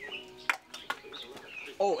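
Ping-pong ball bouncing on the game table: one sharp tap about half a second in, then a weaker one just under half a second later. A man's "Oh" comes near the end, over quiet background talk and music.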